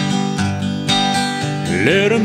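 Steel-string acoustic guitar strummed over held chords in a slow country song, about two strums a second. Near the end a voice slides up into the next sung line.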